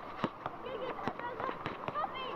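Basketball bouncing on an asphalt court as players dribble: several sharp, irregular bounces, the loudest about a quarter-second in, with young players' voices in the background.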